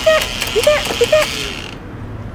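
Small plastic toy hammer rapidly whacking the crocodiles of a cardboard Wani Wani Panic game, each hit a sharp tap with a short squeak. Under it is the steady whir and clatter of the game's motor unit, which stops a little past halfway.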